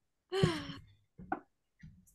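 A person's voice: one drawn-out spoken word with a falling, sigh-like pitch, then a short breath a second later.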